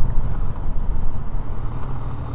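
Steady low rumble of a Yamaha Tracer 900's three-cylinder engine mixed with wind noise, picked up by a helmet-mounted microphone while riding at moderate speed.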